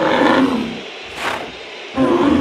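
A short, rough roar-like cry that fades over about half a second, followed by a brief breathy hiss about a second later.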